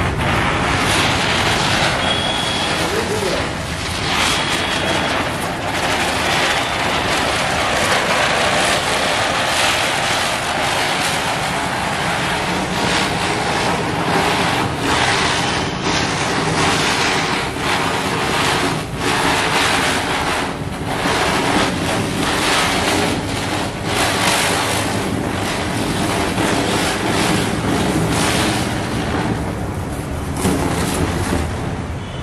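A large Cock brand 70 cm ground chakkar (ground-spinner firework) spinning on concrete while its charge burns: a steady, loud rushing hiss of spraying sparks that swells and dips.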